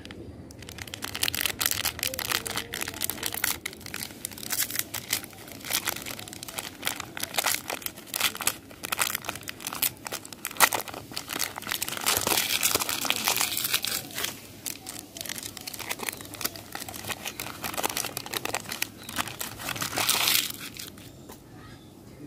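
A chocolate bar's printed plastic wrapper and silver inner foil crinkling and crackling as they are opened and peeled back by hand, a dense run of crackles that stops near the end.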